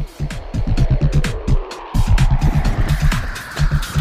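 Electronic background music with a fast, heavy bass beat and a sweeping synth tone. The beat drops out briefly about two seconds in, then comes back.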